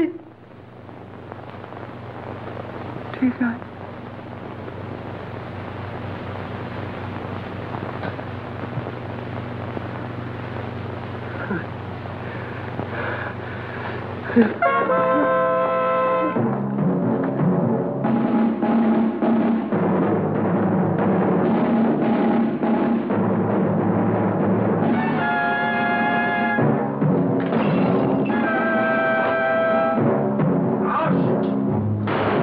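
Dramatic orchestral film score: a low drone swells steadily for about fifteen seconds, then breaks into loud held chords and agitated orchestral music with timpani.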